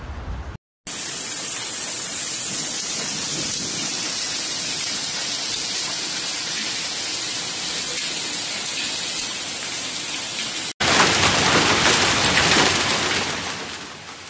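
Steady hiss of a heavy downpour. About eleven seconds in, a cut to a louder, denser stretch of hard-falling rain full of fine patter, which fades near the end.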